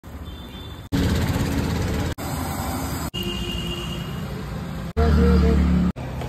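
Street-food cooking on a large flat iron tawa, with food sizzling in oil and traffic rumbling behind, in short clips cut together about every second. The last clip, near the end, is the loudest and heaviest in rumble.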